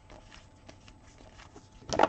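Glossy trading cards being flipped through by hand, sliding against one another in a stack with faint rustles and light clicks, and one sharper snap just before the end.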